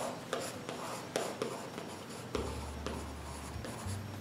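Chalk writing on a small blackboard: a run of short, irregular scratching strokes as a word is written out.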